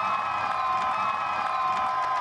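Crowd cheering over a live rock band's final chord, held as a steady high ringing tone.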